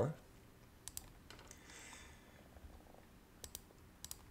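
A few faint, scattered computer mouse clicks, with a soft brief rustle between them, made while switching between browser tabs.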